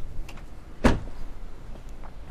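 Door of a 2000 Toyota RAV4 two-door being shut: a single thud a little under a second in.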